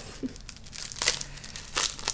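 Paper and plastic crinkling and rustling in irregular crackles as a stack of sticker sheets is handled.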